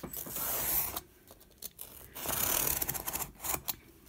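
Snap-off utility knife blade drawn through foam core board along a plastic ruler's edge: two cutting strokes, the first about a second long, the second starting about two seconds in and ending in a few short clicks.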